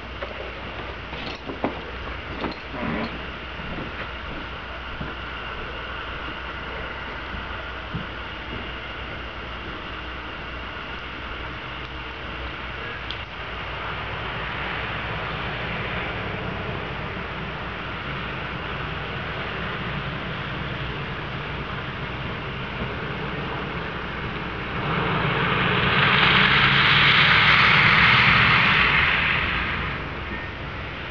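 A car passing on a wet street near the end, its tyre hiss and engine swelling up and fading away over about four seconds, over a steady background of distant traffic.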